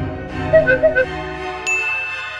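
Comedy sound-effect cue over sustained background music: four quick high notes about half a second in, then a bright bell-like ding near the end, the cartoon 'idea' ding.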